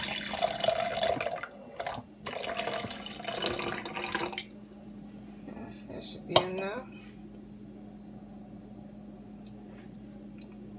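Canned juice drink poured from an aluminium can into a plastic blender cup, splashing for about two seconds, a brief break, then about two seconds more. A sharp knock follows a little past six seconds in.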